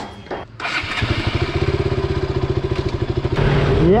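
A motorcycle engine is started: a short burst of starter cranking, then the engine catches about a second in and idles with an even pulse. Near the end it revs up, rising in pitch, as the bike pulls away.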